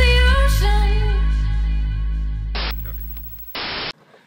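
Electronic dance music with heavy bass and held sung notes, fading out over about three seconds. Near the end a short burst of static hiss cuts in and stops suddenly.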